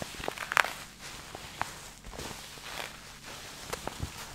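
A black fabric object is rubbed and squeezed right against a microphone, making soft rustling and scratching with scattered crisp clicks. The sharpest click comes about half a second in.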